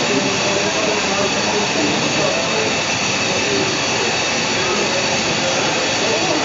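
Recorded jet-engine sound played over a model airport's loudspeakers: a steady hiss and whine that stays even throughout, with crowd chatter underneath.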